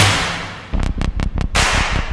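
Edited sound effects under a promo graphic: a loud burst of noise fades away, then a quick run of about six sharp cracks like a whip or firecrackers, and a new noisy swell starts near the end.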